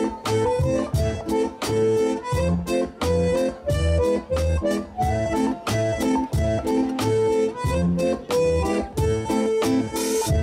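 Live dance music from a small band: a sustained melody line over drums and acoustic guitar, with a steady beat.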